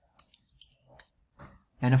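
A handful of faint, quick clicks from a computer keyboard and mouse during code editing, then a man starts speaking near the end.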